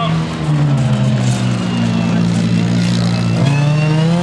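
Autocross car engine running hard on a dirt track. About half a second in the note drops, then holds steady, and it climbs again near the end as the car accelerates.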